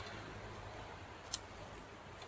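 Quiet room tone with one faint, short click a little past halfway.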